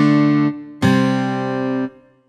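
Strummed chords from an Ample Sound acoustic guitar virtual instrument, triggered from Scaler's chord pads. Two chords: the first rings and stops abruptly about half a second in; the second starts just under a second in, rings for about a second and is cut off near the end.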